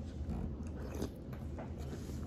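A person chewing a mouthful of crunchy cinnamon cereal, with faint irregular crunches.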